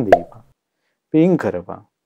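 A man preaching a Buddhist sermon in Sinhala, in short phrases with a gap of about half a second in the middle. A single sharp click comes just after the start and is the loudest sound.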